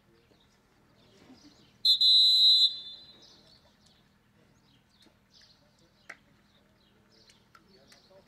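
A referee's whistle blown once, one loud, steady blast of just under a second, about two seconds in.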